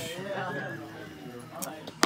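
A man's quiet voice murmuring without clear words, with a light sharp click about one and a half seconds in as trading cards are gathered off the playmat.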